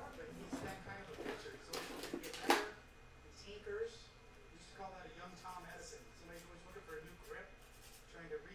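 Faint voices in the background, with a short run of scraping and clicking noises about two seconds in that ends in one sharp click.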